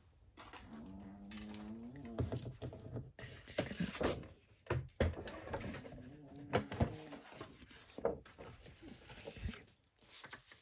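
Plastic scoring board set down and paper sheets slid and laid on it: a series of light knocks, clicks and paper rustles. A low steady pitched tone sounds twice, about a second in and again around six seconds in.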